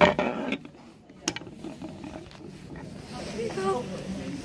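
Handling noise as a collapsible dog water bowl is picked up off a table and carried down to the floor: a loud knock and rustle at the start, then a sharp click about a second in.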